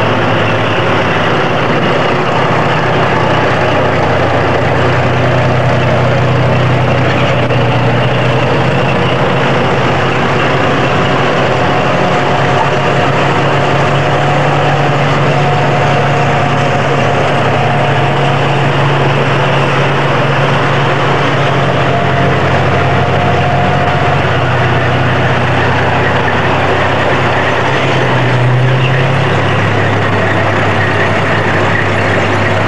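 A heavy engine running steadily and loud, its low hum shifting in pitch briefly near the end.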